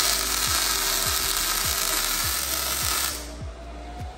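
MIG welding arc running as a steady loud hiss, cutting off suddenly about three seconds in.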